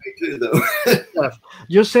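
A man clears his throat, then starts speaking again.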